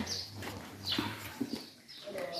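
A few short, high bird chirps, one near the start and another about a second in, over quiet background.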